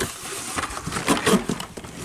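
Cardboard and plastic blister-pack cards rustling and scraping as carded die-cast toy cars are pulled out of a cardboard shipping case, with irregular small clicks and knocks.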